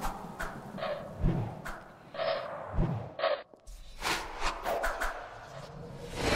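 Animated-intro sound effects: a string of short thuds and hits, with a low steady hum coming in about halfway through under a few more quick hits.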